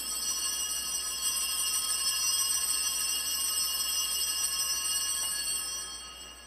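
Altar bell ringing on and on at the elevation of the chalice during the consecration at Mass. It is a high, shimmering chime that holds steady and then fades away near the end.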